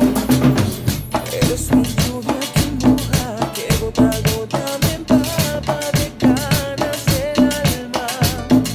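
Latin percussion ensemble playing a steady groove: drum kit, timbales, congas and a metal güira scraping a continuous rhythm, with a low note recurring about once a second. A melody line joins about three and a half seconds in.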